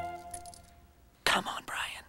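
A held musical chord fades away in the first half second. About a second and a quarter in, a loud breathy whispered voice starts suddenly and lasts under a second.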